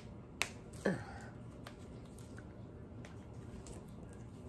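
Handling of a bundle of cloth handkerchiefs fastened together with a tag. There are three sharp clicks in the first second, then a few faint ticks over quiet room tone.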